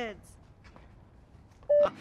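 A single short electronic beep near the end, one steady mid-pitched tone lasting a fraction of a second and much louder than the quiet background before it.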